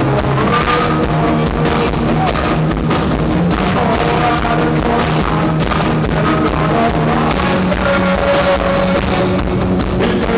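Live rock band playing loud and steady: electric guitar, bass and drum kit.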